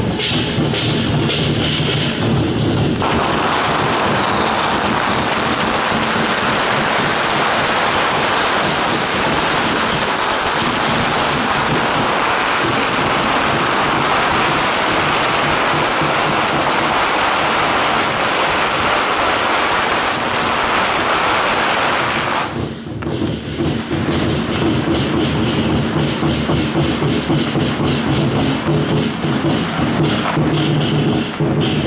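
Procession drums and cymbals playing a steady rhythm, then about three seconds in a long string of firecrackers starts crackling densely and keeps on for about twenty seconds. When the firecrackers stop abruptly, the drums and cymbals are heard again.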